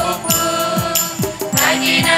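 A group of women singing a devotional song together, amplified through microphones, over a steady beat of drum strokes about twice a second with jingling percussion.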